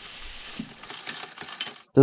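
Animation sound effects: a short hiss of steam, then a run of irregular mechanical clicks and ratcheting like small gears turning. It cuts off suddenly near the end.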